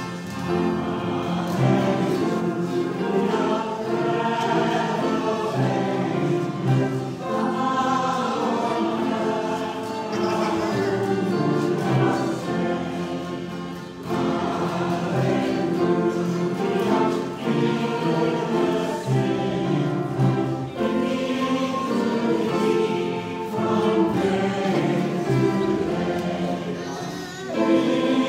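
A choir singing a hymn during Communion, in sung phrases with short breaks between them.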